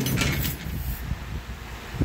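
Rustling and rubbing handling noise from a hand-held camera being moved, with an irregular low rumble and a short hiss at the start.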